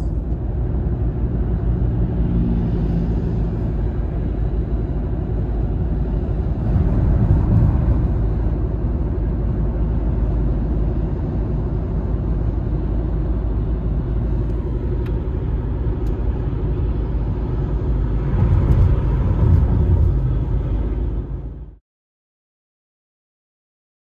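Steady low road and engine rumble inside a moving car's cabin. It swells louder twice, about a third of the way in and near the end, then cuts off suddenly.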